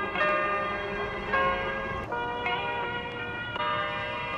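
Background music: sustained chords of several steady notes, each held about a second before the next takes over.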